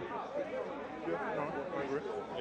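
Background chatter: overlapping voices of people talking, lower than the main speaker.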